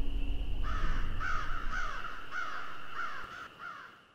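Crow cawing over and over, about two caws a second, fading out near the end, over a low rumble that dies away in the first second.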